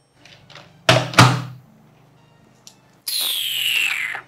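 Two heavy thuds in quick succession about a second in, then near the end a falling, whistling swoosh that slides down in pitch over about a second.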